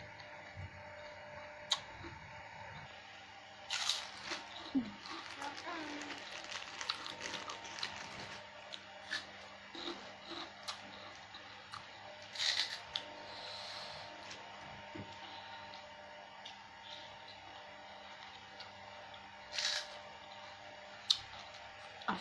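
Close-miked eating: chewing and crunching mouthfuls of asinan sayur (vegetable salad in chili sauce) with crackers, with scattered sharp clicks of a metal spoon against a plastic bowl. The crackling is densest for a few seconds about four seconds in, with further short crunches later.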